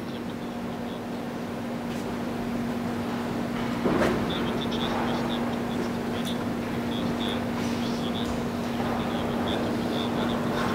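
Echoing room sound of a large church nave full of visitors: a diffuse background of people moving and murmuring under a steady low hum, with a single knock about four seconds in.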